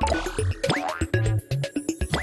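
Playful, bouncy title jingle with cartoon boing sound effects: quick springy pitch glides several times a second over short bass notes and percussive hits.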